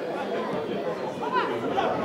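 Several men's voices calling and shouting to each other across a football pitch, overlapping, with one sharp rising shout about a second and a half in.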